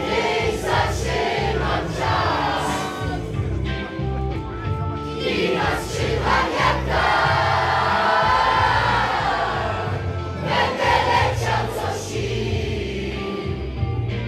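A group of men singing together in chorus over backing music with a steady beat.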